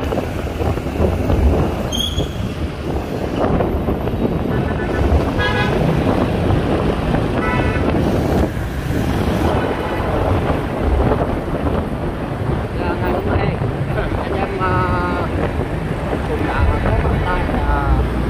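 Dense street traffic heard from a moving motorbike: scooter and car engines running with wind on the microphone, and several short horn toots scattered through.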